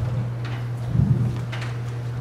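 Pause in a meeting hall: room tone carried by a steady low electrical hum, with a soft low bump about a second in.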